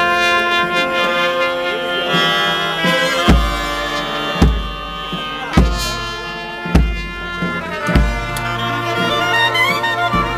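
New Orleans brass band playing a slow dirge: trumpets, trombones and sousaphone hold long chords over a bass drum. The drum strikes a slow, steady beat, about one stroke every second and a quarter, from about three seconds in.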